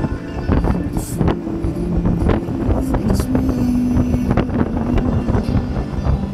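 BMW K1600 GTL touring motorcycle riding at road speed: wind rushing and buffeting on the microphone over the bike's running engine, with music playing underneath.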